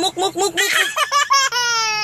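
Baby laughing in a quick run of short, high-pitched laughs, followed by a long drawn-out note near the end.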